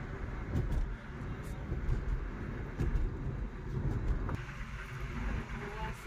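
Steady low rumble of engine and tyre noise heard inside a moving car's cabin.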